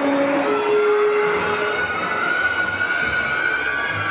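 Music with long held melody notes over a steady background.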